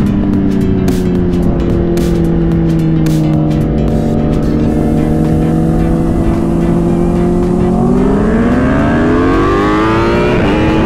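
Inline-four sport bike engine running at a steady, slowly falling pitch, then revving up hard from about eight seconds in as the bike accelerates.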